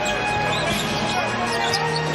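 Basketball being dribbled on the hardwood court during live game play, over steady music playing in the arena.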